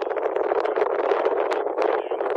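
Wind buffeting the phone's microphone: a loud, rough noise that swells and dips unevenly and covers everything else.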